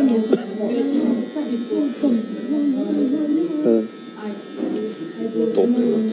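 A man singing a melody alone, with no accompaniment, in long gliding phrases. He breaks off briefly about four seconds in, then carries on.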